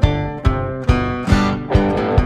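Instrumental song intro led by a strummed acoustic guitar. Chords are struck on an even beat, a little over two strokes a second, each ringing on into the next.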